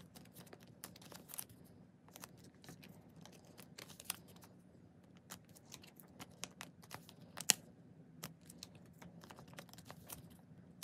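Photocards in clear plastic sleeves being handled and laid down on plastic binder pages: a scattered run of light clicks, taps and crinkles, with one sharper click about seven and a half seconds in.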